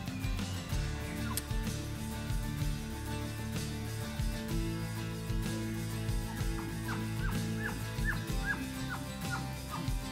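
Background music with a steady low drone. Over the last few seconds there is a quick run of about ten short, high chirps, each rising then falling, typical of cow-elk chirps used to call in a bull.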